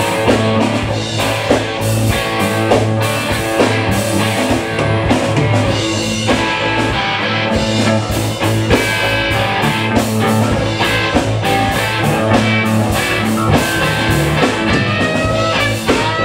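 Live rock band playing an instrumental passage: electric guitars, bass guitar and drum kit, with a steady beat. A rising note slides up near the end.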